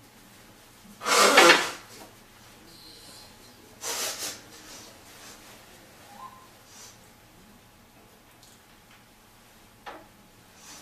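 Handling noises from objects being moved and set down: a loud scraping, clattering burst about a second in, a shorter one about four seconds in, then a few light knocks.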